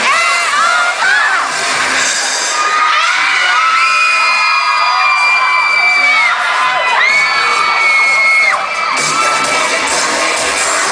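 Crowd of young fans screaming and cheering, with several long high-pitched screams each held for about two seconds in the middle of the stretch.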